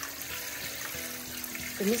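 Kitchen tap running steadily into a steel pot of boiled rice vermicelli in a stainless-steel sink, rinsing the starchy cooking water off the noodles.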